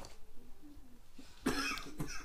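A child coughing: one short, harsh cough burst about a second and a half in.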